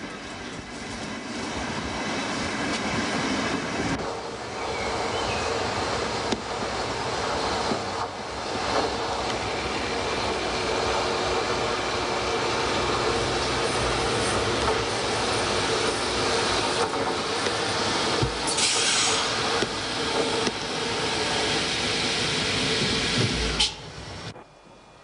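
A Berlin S-Bahn class 480 electric multiple unit running along the track towards the camera, with steady rail running noise throughout. A brief burst of high-pitched noise comes about two-thirds of the way through, and the sound drops away suddenly just before the end.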